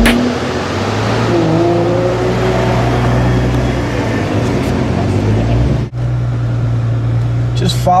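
Nissan GT-R's twin-turbo V6 running at low speed with a steady hum and road noise as it rolls out of the pit lane. The sound breaks off abruptly about six seconds in and picks up again with the same steady engine hum.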